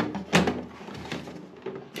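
A plastic protective cover being pressed onto the front opening of a concealed toilet cistern: one sharp plastic knock about a third of a second in, then faint handling noise.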